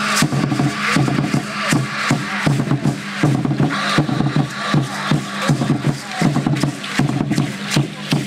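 Huehuetl, tall wooden Aztec drums with hide heads, beaten with sticks in a steady, driving beat for an Aztec ceremonial dance.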